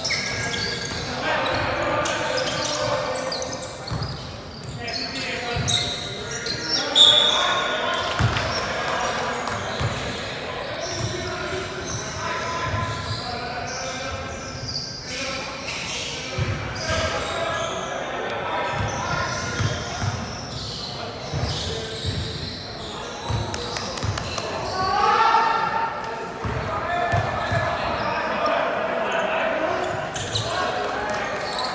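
A basketball bouncing on a hard court floor in a large, echoing hall, with repeated irregular thuds. Players' voices call out over it.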